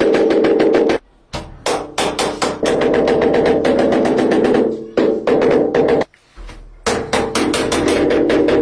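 Mallet tapping a large marble-effect wall tile in quick repeated strokes, several a second, to bed it into the adhesive. The tapping has two brief pauses, about a second in and about six seconds in.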